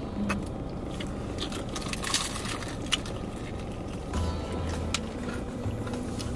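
Steady low hum of a car cabin, with a few short clicks while she eats.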